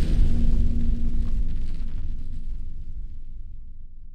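The fading tail of a deep cinematic boom sound effect from a logo intro: a low rumble with a held low tone, dying away steadily.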